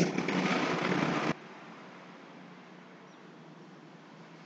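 Steady background hiss of room noise that cuts off abruptly a little over a second in, leaving only a faint hiss.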